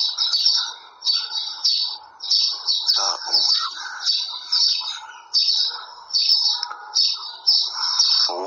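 Birds chirping in short high bursts that repeat about once a second, with lower chattering calls underneath.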